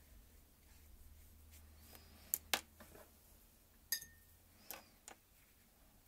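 Quiet room with about five sharp clicks and taps of paintbrushes being put down and picked up among watercolour painting things, the loudest two about two and a half and four seconds in; the tap at four seconds rings briefly.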